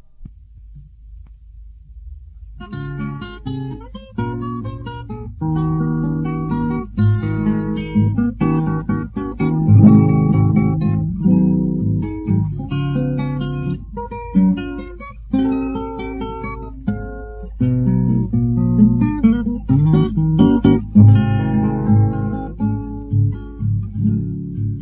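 Acoustic guitar playing an instrumental introduction of picked notes and strummed chords, coming in about two and a half seconds in over a steady low hum.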